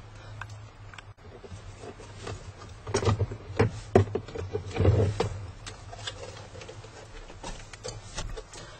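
Plastic dashboard trim of a 2008 Chrysler Aspen being handled and worked loose: a run of knocks, clicks and scrapes, busiest and loudest from about three to five seconds in, over a low steady hum.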